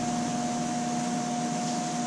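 Steady mechanical hum, with two constant tones over an even hiss and no distinct clicks or knocks.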